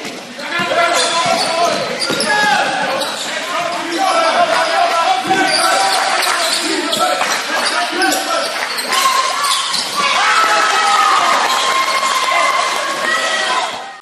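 Basketball being dribbled on a gym floor during live play, with players and spectators calling out over the game.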